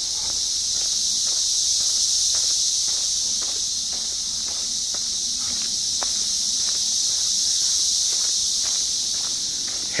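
A loud chorus of 17-year periodical cicadas, a steady high-pitched drone that swells and eases slightly, with soft footsteps on a dirt trail underneath.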